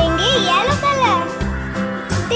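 Background music for children: a repeating bass line under high, gliding child-like voices.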